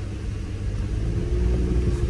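Four-wheel-drive vehicle driving on a snowy mountain road, its engine and road noise a steady low rumble heard inside the cabin.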